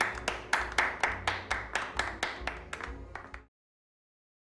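Hands clapping in a steady rhythm, about four claps a second, over the lingering end of a band's music; it cuts off suddenly about three and a half seconds in.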